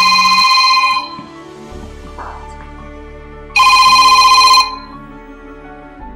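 Mobile phone ringing: two rings, each a loud, trilling electronic tone lasting about a second, the second starting about three and a half seconds in.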